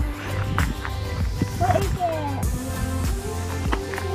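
Background music with a steady bass line, with voices faintly under it.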